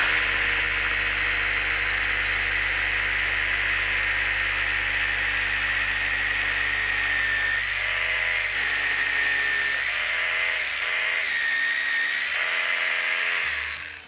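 Hilti TE 4-A18 cordless rotary hammer drilling into a concrete block column. It runs steadily, its pitch wavering in the second half as the load shifts, then stops just before the end.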